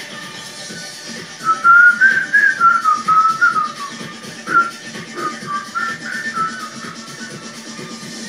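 A high whistle melody, a single clean line stepping up and down through a tune, plays over backing music during a break between sung verses. It comes in about a second and a half in, is strongest at first, and fades out near the end.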